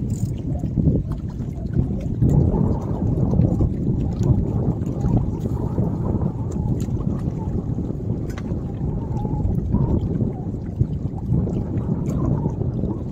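Wind rumbling on the microphone, with small waves lapping against the rocky shore.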